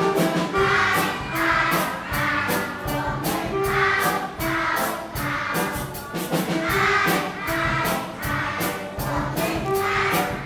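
A song sung by a group of young children along with recorded music that has a steady beat.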